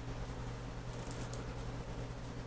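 Faint ticks and scrapes of flat-nose pliers twisting thin wire, clustered about a second in, over a steady low hum.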